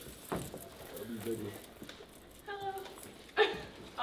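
Quiet, brief bits of voice in a small room: a faint short murmur about a second in, another short voiced sound and a breathy burst near the end, and a soft click at the start.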